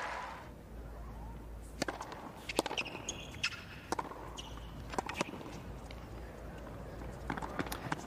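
Tennis ball struck by racquets and bouncing on a hard court during a point, about ten sharp pops spaced half a second to a second apart, with a few short high squeaks near the middle, over low crowd quiet.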